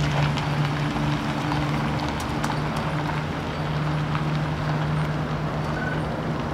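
Fire engine's diesel engine idling: a steady low hum with a light clatter and a few scattered clicks.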